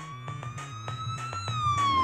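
Cartoon fire-engine siren wailing. The pitch rises slowly, then starts to fall about a second and a half in.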